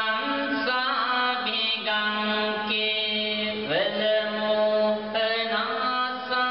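Chanting: a single voice holding long sung notes that step and glide in pitch, over a steady held drone.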